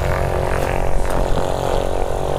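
A steady engine drone at one constant pitch, neither rising nor falling.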